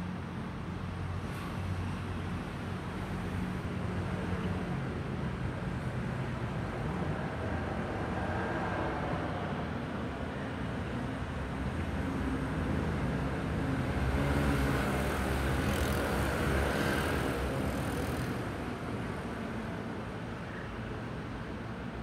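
A steady, low engine-like rumble that grows louder and hissier past the middle, then eases off toward the end, like a motor vehicle passing.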